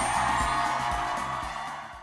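Music with a steady beat, fading out near the end.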